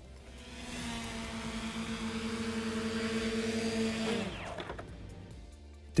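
WingtraOne VTOL drone's two propellers whirring with a steady hum as it comes down to land automatically, growing louder. About four seconds in the motors spin down and stop once it touches down.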